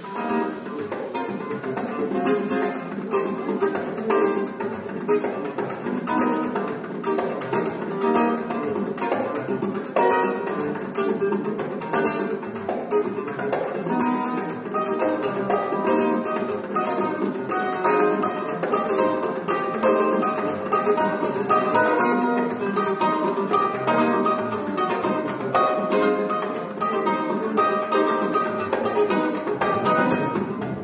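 Live Brazilian instrumental band playing, with plucked acoustic strings (guitar and bandolim) to the fore over electric bass, drum kit and congas.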